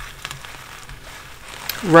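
Low room tone with a few faint clicks, then a woman's voice starts near the end.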